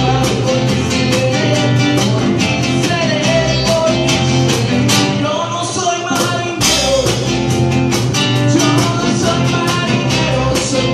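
Acoustic band playing: acoustic guitar and bass over a steady cajón beat, with a melody line sliding in pitch in the middle of the passage.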